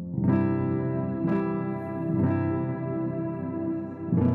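Roland electronic keyboard playing a slow niggun melody in sustained chords, with a new chord struck about once a second in the first half and the last one held.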